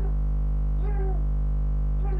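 Steady low electrical hum. About a second in, a brief faint bit of a human voice.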